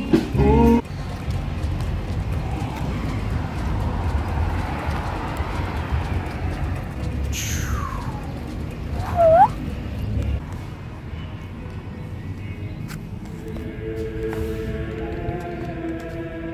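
Low rumbling noise with a high whistle that glides steeply down in pitch about halfway through. From about thirteen seconds in, steady held musical tones at several pitches take over.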